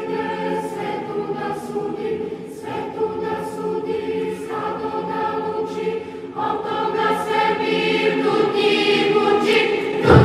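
A choir singing a slow hymn in Serbian, with sustained chords that change every couple of seconds. The singing swells louder over the last few seconds.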